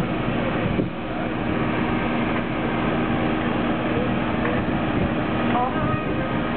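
Massey Ferguson tractor's diesel engine running at a steady speed while hitched to a tractor-pulling sled, before the pull begins.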